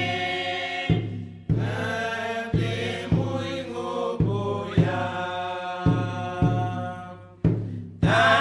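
A group of voices sings together in long held notes, with a deep drum struck in a steady beat. The sound fades briefly near the end.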